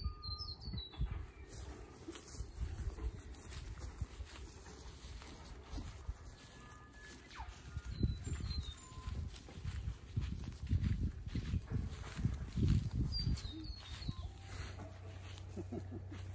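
Outdoor ambience: short high bird chirps a few times, near the start, about halfway and near the end, over uneven low rumble and thumps at the microphone from walking across grass.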